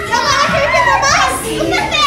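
Young children's high-pitched voices chattering and calling out excitedly while playing together in a group.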